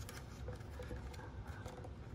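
Faint handling noise: a few light clicks and rubbing as a hand works a transducer cable against the black plastic case of a flasher shuttle.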